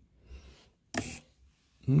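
A single sharp mechanical click about a second in, a toggle switch being flicked on a Jeti DS-24 radio-control transmitter to change flight mode, with a faint rustle of handling just before it.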